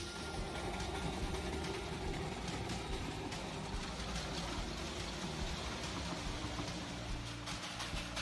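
Narrow-gauge Darjeeling Himalayan Railway toy train, hauled by a small steam locomotive, making a steady running noise as it travels along the line.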